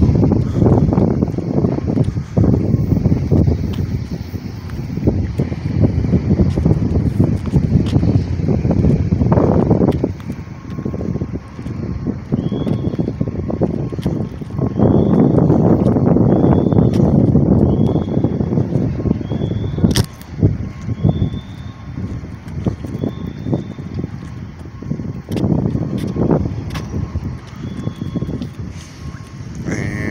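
Wind buffeting a phone microphone outdoors, a loud uneven low rumble that swells and eases. In the second half a run of short high chirps comes about once a second, and there is one sharp click about two-thirds of the way through.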